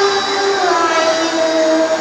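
A boy's voice in melodic Quran recitation (tilawah) into a microphone, holding one long note that dips slightly and settles lower.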